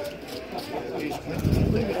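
Voices of players talking around a poker table, with a low rumbling thump about one and a half seconds in.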